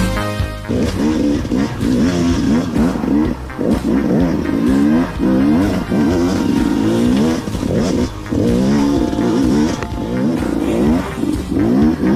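KTM enduro motorcycle engine revving up and down over and over as the throttle is worked, each rise and fall lasting about a second, with music faint underneath.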